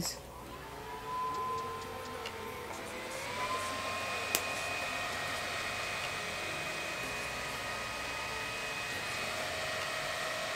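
Small handheld electric fan running, its motor whine stepping up in pitch about a second in and again about three seconds in, then holding steady; it is drying freshly applied under-eye concealer.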